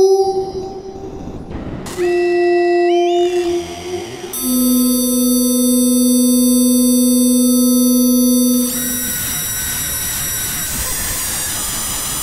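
Eurorack modular synthesizer, an FM-modulated E-RM Polygogo oscillator run through two Mutable Instruments Ripples filters, playing held keyboard notes. Each note lasts a few seconds and its upper overtones climb in steps. A hissing noise wash sits between notes about a second in, and the sound turns noisier and busier near the end.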